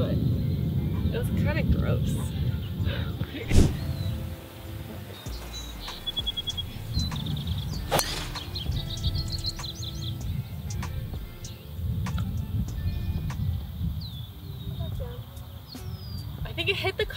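A golf ball struck off the tee with a club about eight seconds in, a single sharp crack, with a louder knock a few seconds earlier. A low, rumbling noise rises and falls throughout.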